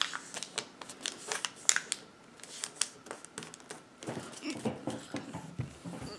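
A sheet of origami paper being folded and creased by hand: crisp paper crackles and rustles, densest in the first three seconds and sparser after.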